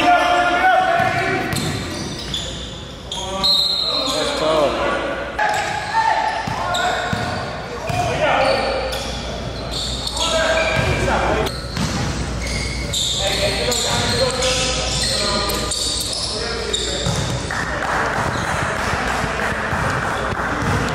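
Basketball game in an echoing gym: a ball bouncing on the hardwood court among players' indistinct voices and shouts.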